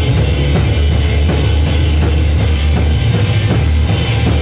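Live rock band playing loud: a drum kit with evenly repeating cymbal and drum strikes over a heavy electric bass line.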